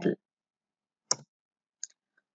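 A sharp click about a second in and a fainter click near the end, with near silence around them.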